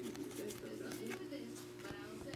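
Quiet handling of a stack of trading cards as they are flipped through by hand, over a steady electrical hum, with faint low-pitched calls in the background.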